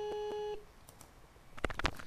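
A steady electronic beep tone, the voicemail's tone after the greeting, played through a computer speaker and picked up by a microphone; it cuts off about half a second in. A few sharp clicks follow near the end.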